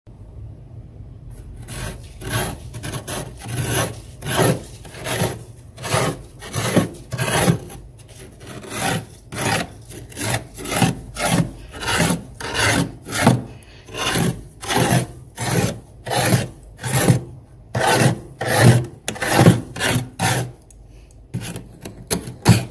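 Metal spoon scraping thick, flaky frost off the walls of a freezer compartment in repeated rasping strokes, about two a second, starting after about a second and a half.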